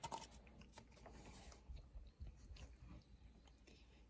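Near silence inside a car cabin: a faint low hum with a few soft, scattered clicks.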